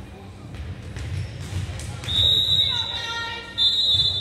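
Referee's whistle blowing a long steady blast about two seconds in, then a second blast near the end, over crowd voices and thumps on the court in a large gym.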